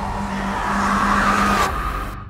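Horror-film sound effect: a sustained, noisy screech-like sound with a steady high tone and a low tone beneath, fading out near the end.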